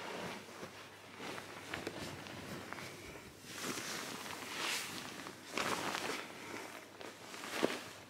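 Bed sheets and duvet rustling in a series of soft swells as someone moves about on the bed, with a few light handling clicks.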